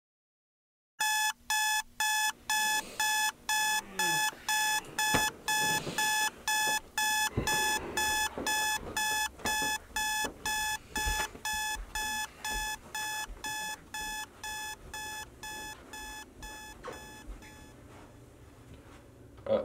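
Electronic alarm clock beeping in a rapid, even pattern of about three beeps a second. It starts about a second in, grows gradually quieter and stops near the end, with a few thumps underneath.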